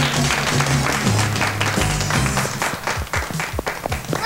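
A studio audience of children clapping over music, thinning to a few scattered claps near the end.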